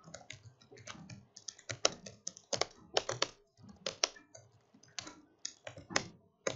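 Typing on a laptop keyboard: quick, irregular keystroke clicks, several a second, with a few short pauses.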